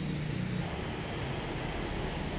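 Steady low background hum of distant city traffic.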